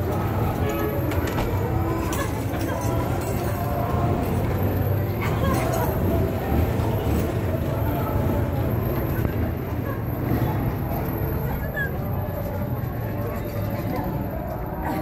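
Indistinct voices of people in the street over a steady low rumble of outdoor noise.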